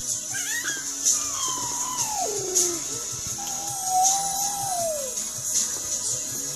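A baby girl singing in her own wordless way: a long falling glide, then a held note that slides down at the end. Background music with a regular tambourine-like beat runs underneath.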